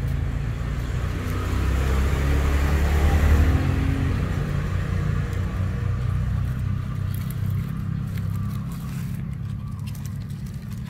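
Engine rumble of a motor vehicle nearby, growing louder to a peak about three seconds in and then slowly fading, as of a vehicle passing.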